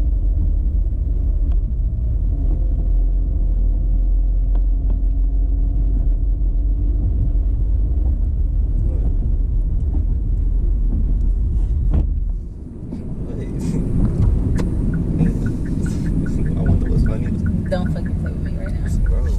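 Steady low road and engine rumble inside a moving car's cabin. About twelve seconds in there is a sharp click, and the rumble briefly eases off before coming back.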